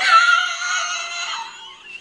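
A man's loud, high-pitched shrieking laugh, one held outburst of about a second and a half that fades away.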